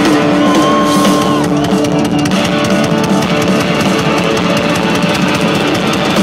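Live rock band playing an instrumental stretch, with a Gibson Les Paul electric guitar to the fore over drums. A high guitar note is held for about a second near the start.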